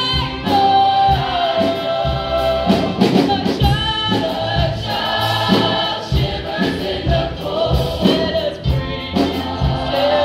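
A female soloist singing into a microphone with a choir singing behind her; her long held notes waver in pitch.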